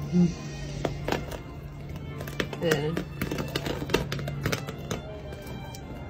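Thin tape strips being peeled off a painted canvas, giving a scatter of sharp crackles and snaps, over background music with a steady low tone. A voice sounds briefly about three seconds in.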